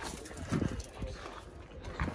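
Footsteps crunching on gravel, a few irregular steps, with faint voices in the background.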